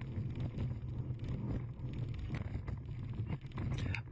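Speedboat running at speed: a steady low rumble with wind and water rush.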